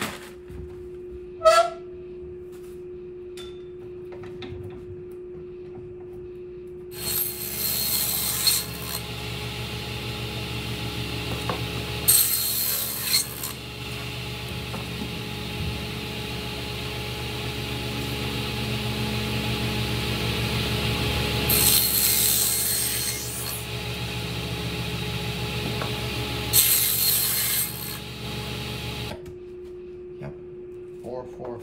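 Table saw starting up about seven seconds in and running steadily, with four short bursts of high hiss as its blade cuts through pink extruded-polystyrene insulation foam. The saw shuts off just before the end.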